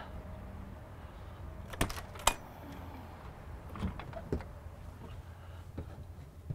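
Two sharp clicks about two seconds in, then a few soft knocks of footsteps going up a motorhome's metal entry steps, over a low steady hum.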